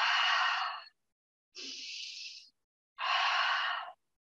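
A woman doing yoga lion's breaths: two loud, forceful open-mouthed exhales, at the start and about three seconds in, with a quieter inhale between them.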